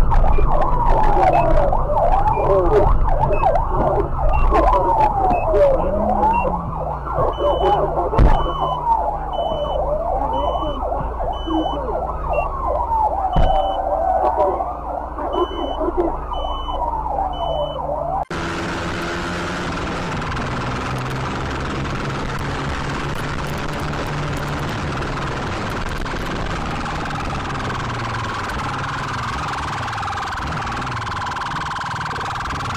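Emergency-vehicle siren wailing over traffic, its pitch rising and falling every two to three seconds, with a short high beep repeating about once a second partway through. About two-thirds of the way in the siren cuts off abruptly and gives way to a steady rushing noise.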